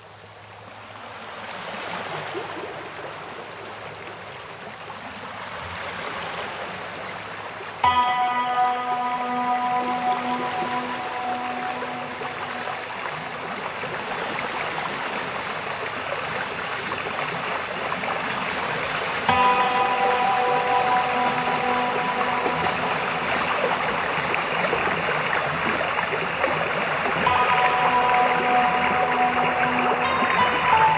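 Steady rain noise that fades in over the first couple of seconds. About eight seconds in, soft sustained music chords enter over it, and they return twice more later.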